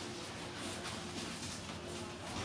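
Gloved fingers wiping a citric-acid pickling gel across a stainless steel weld, giving faint, irregular brushing strokes over a steady low background hum.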